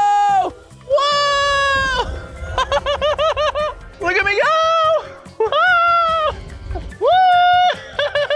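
A man's excited, drawn-out shouts of "whoa", about four long held cries, with bursts of rapid laughter between them.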